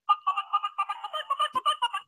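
Bike Tones electronic bicycle horn playing its sound: a quick chirpy run of short electronic beeps, about ten a second, hopping in pitch.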